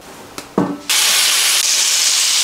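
Steak sizzling in a hot frying pan: a loud, even hiss that starts suddenly about a second in.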